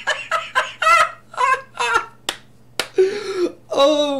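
A man laughing in a quick run of short voiced bursts that slow down and thin out, with two sharp clicks in the middle.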